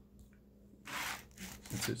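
Knife sawing through a frozen coconut cake: a short scraping sound about a second in, with a few smaller scrapes after it.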